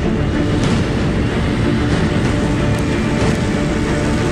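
Background music over a snowmobile engine running as the sled crosses the snow.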